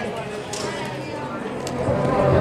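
Indistinct background chatter of voices, with two sharp knocks, one about half a second in and one near the end.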